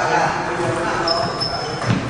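Table tennis rally: the celluloid ball knocking off rubber paddles and bouncing on the table, with a sharp knock near the end. Voices chatter throughout, and a brief high squeak comes about halfway through.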